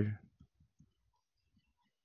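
A few faint, short clicks and taps from a pen writing on a computer writing tablet, spaced irregularly in the first second and a half.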